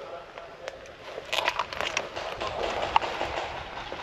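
Dry twigs snapping and dead conifer branches scraping against clothing and gear as someone pushes through dense forest undergrowth, a run of crackling starting about a second in and easing off near the end.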